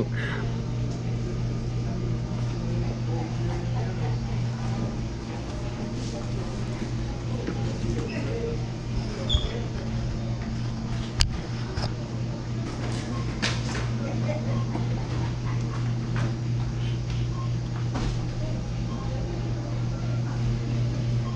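Steady low hum of indoor background noise, with faint, indistinct voices and a few light clicks.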